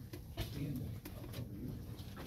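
Low murmur of voices in a room, with a few light clicks and knocks, the sharpest about half a second in.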